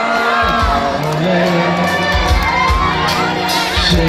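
Live band music with regular drum beats and held low keyboard notes, under a crowd of children shouting and cheering.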